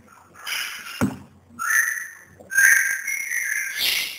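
A sharp click about a second in, then two high whistle-like tones: a short one, then a longer, steadier one lasting over a second.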